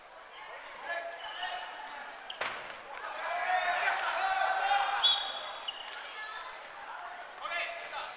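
Players' shouts and calls echoing in a large gymnasium, loudest in the middle, with short sneaker squeaks on the wooden court and a sharp thump about two and a half seconds in.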